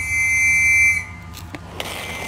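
A single high-pitched electronic beep, held steady for about a second, then cut off sharply.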